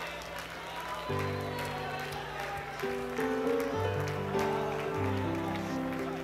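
Soft background music: held, sustained chords, the first coming in about a second in and then changing every second or so, under faint murmured voices.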